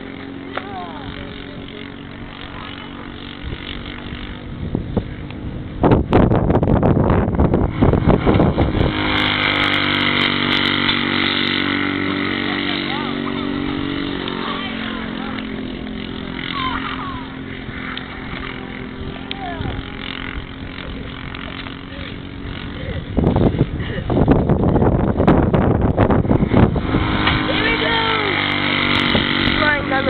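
Small single-cylinder four-stroke clone engine on a go-kart running at speed around the track, its pitch rising and falling as it laps. The sound turns louder and rougher for a few seconds twice, about six and about twenty-three seconds in.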